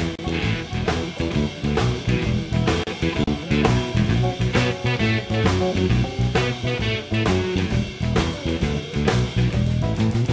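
A band plays an instrumental passage between sung lines of a Dutch-language song, with drums keeping a steady beat under the instruments.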